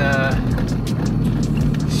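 Steady low drone of a tow vehicle's engine and tyres on a snowy road, heard inside the cab, with music over it and a voice in the first half second.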